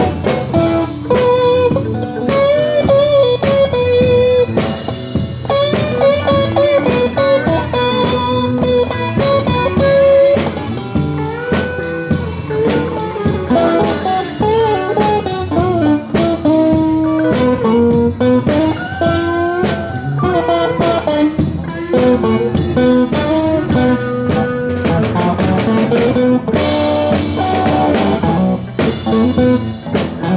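Live electric blues band playing an instrumental passage: electric lead guitar with bending notes, over bass guitar and a drum kit.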